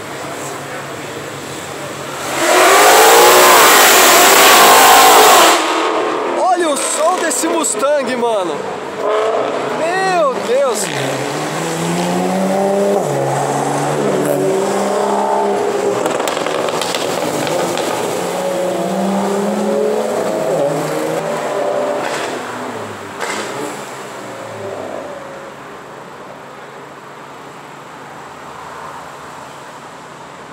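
Ford Mustang V8 revving in a sudden, very loud blast of about three seconds, then accelerating away, its engine pitch rising and falling through gear changes before it fades out over the last few seconds.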